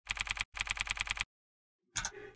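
Computer keyboard typing sound effect: a fast run of key clicks, roughly a dozen a second, with a brief break after the first half-second. The run stops about a second and a quarter in, and one more click comes just before the end.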